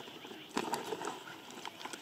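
Footsteps on loose broken rock, with stones clicking and knocking underfoot; a denser run of knocks comes about half a second in.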